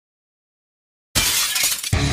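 Silence, then about a second in a sudden loud crash, a short burst of noise, with heavy guitar music starting right after it near the end.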